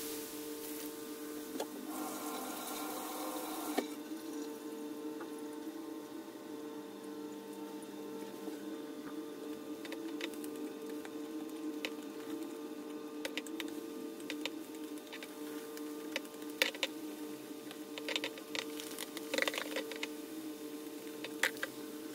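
Eggshells reacting in nitric acid: the foaming mixture fizzes, with scattered small pops and crackles as bubbles burst, mostly in the second half. A steady low hum runs underneath.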